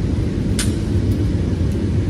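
A steady low rumble, with one light click a little over half a second in.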